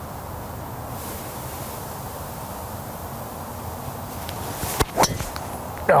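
Driver striking a golf ball off the tee: one sharp metallic crack about five seconds in, over a steady outdoor hiss.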